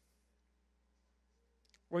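Near silence with a faint steady low room hum, a short pause between a man's spoken phrases; his voice comes back at the very end.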